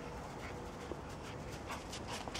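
Golden retriever whining faintly in one thin, steady note, followed near the end by steps crunching in snow.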